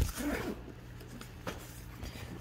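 Zipper on a fabric backpack being pulled open, a short rasp near the start, followed by quieter handling noise and a light click about halfway through.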